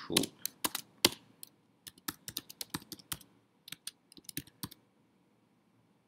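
Typing on a computer keyboard: a run of irregular keystroke clicks that stops about a second before the end.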